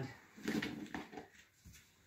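A plastic serving bowl's snap-on lid being handled and lifted off, with soft handling noise and a few light clicks.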